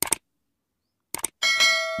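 Subscribe-button animation sound effect: a short click, then a bright bell ding about a second and a half in whose several steady tones ring on as it fades.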